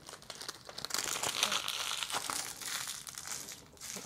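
CD packaging crinkling and rustling as it is unwrapped by hand, with a brief pause near the end.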